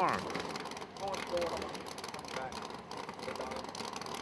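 Faint, scattered background voices over a low, steady background rumble, much quieter than the commentary around it.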